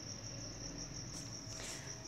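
Faint, steady high-pitched insect chirping, evenly pulsed, over a low background hum.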